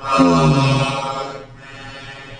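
A man's drawn-out, held groan lasting about a second, fading away midway through.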